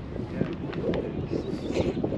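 Indistinct voices of people talking nearby, growing louder toward the end, over a steady outdoor background.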